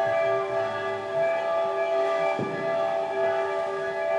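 A solo violin and a string orchestra hold long, steady, dissonant chords in an atonal twelve-tone piece, with several sustained notes sounding together.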